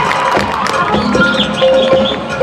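Marching band music: held tones come in about a second in, with sharp percussion strikes, over crowd noise from the stands.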